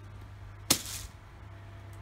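A single sneeze, sudden and sharp, about a third of a second long, a little under a second in.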